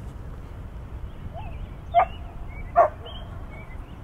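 A dog barking twice, a little under a second apart.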